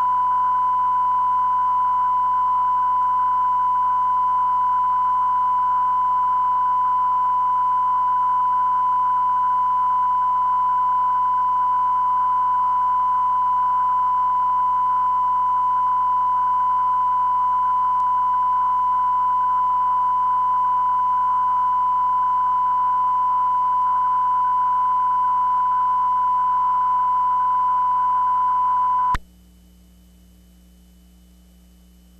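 A steady, single-pitched test tone recorded on a VHS tape after the programme, held unchanged for almost half a minute with faint tape hiss under it; it cuts off suddenly about a second before the end.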